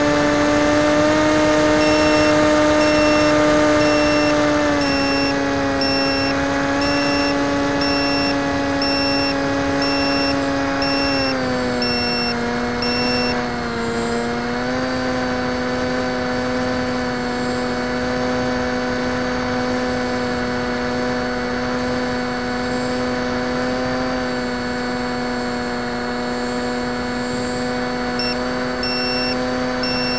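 Comet FPV flying wing's motor and propeller, heard through the onboard camera, running as a steady pitched hum. The pitch steps down twice as the throttle is eased, about five and twelve seconds in, and the motor starts to wind down at the very end.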